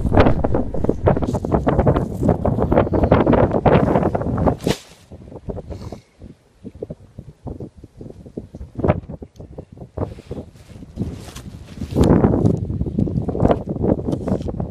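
Wind buffeting the microphone, loud and rumbling for the first four and a half seconds and again from about twelve seconds in, with a much quieter stretch between that holds a few faint clicks.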